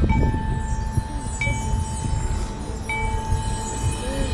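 Marching band front-ensemble percussion in a quiet passage: bell-like struck notes ringing out, three strikes about a second and a half apart over a held tone.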